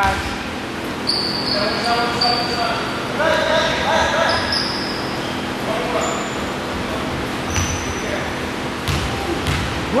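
Basketball game on a hardwood gym floor: sneakers squeaking and players' voices echoing in the hall, then a basketball bouncing on the floor a few times near the end.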